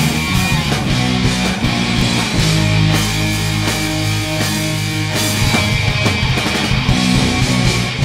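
A live rock band playing an instrumental passage on electric guitars, bass and drums, with a held low chord through the middle of the passage.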